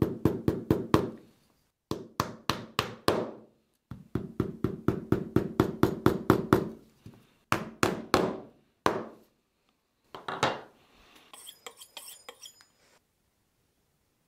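A small hammer tapping a nail through a thick glued leather strip into a work board, fixing the strip at its end. The taps come in quick runs of about four or five a second with short pauses, then a few single taps.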